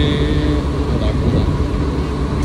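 Low, steady rumble of vehicle engines running in a car rental lot, with voices in the background.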